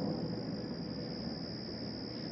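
Crickets calling in a steady night chorus, a thin unbroken high buzz over low background noise.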